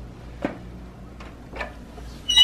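A few light clicks and knocks of kitchen handling around an electric chaffle maker, over a low steady hum.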